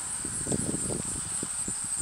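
A steady, high insect trill, like crickets, under rustling and light knocking handling noise through the middle.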